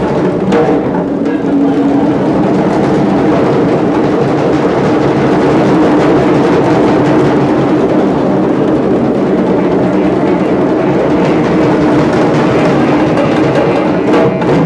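A drum circle of congas and djembes played together by hand in a dense, steady groove.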